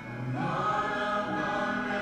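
Live worship song: singers' voices come in about half a second in, over a strummed guitar accompaniment.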